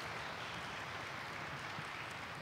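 Steady, even background noise of a lecture hall's sound system between speakers, with no voice and no distinct clicks.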